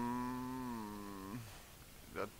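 A man's drawn-out, wordless hesitation hum, held on one steady pitch that sags a little before it stops about a second and a half in.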